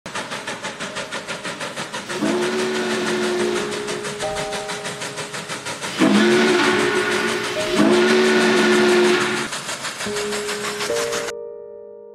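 Norfolk and Western 611 Class J steam locomotive running at speed: rapid exhaust chuffs, about five or six a second, under several long blasts of its chime whistle, each sliding up in pitch as it opens. The sound cuts off suddenly near the end.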